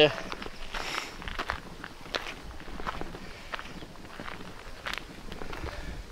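Footsteps of a person walking on a gravel and cobblestone path, a steady walking pace of about one and a half steps a second.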